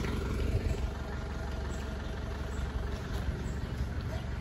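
Truck engine idling with a steady low rumble.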